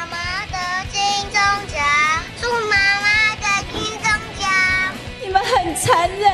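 A young child's high voice, in short sing-song phrases, played from a mobile phone held up to stage microphones. A woman starts speaking near the end.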